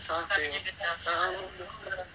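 Speech: a person talking, with short pauses between phrases.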